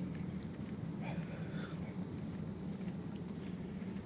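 Steady low background hum with faint, scattered light ticks.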